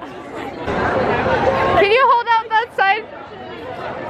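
Crowd chatter and hubbub in a large, busy hall. A nearby person laughs in a few quick, choppy bursts about two seconds in.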